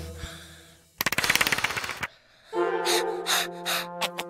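Cartoon sound effect of a balloon deflating: a hiss of escaping air that fades out, then about a second of rapid fluttering rattle as the air rushes out. Near the end comes a pitched, pulsing cartoon giggle.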